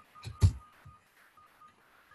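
Two or three sharp clicks on a computer, the loudest about half a second in, as document text is selected and reformatted. A faint, short, high beep recurs in the background.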